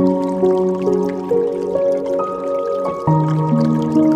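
Slow, soft piano melody in sustained single notes, a new note coming in about every half second, with a low bass note entering about three seconds in. Faint water dripping underneath.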